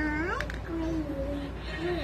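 A young child's high, drawn-out sing-song voice: it rises sharply at the start, then holds long wavering notes with no clear words.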